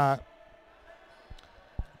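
A basketball bouncing twice on a hardwood court, faint, in a quiet sports hall during a stoppage in play.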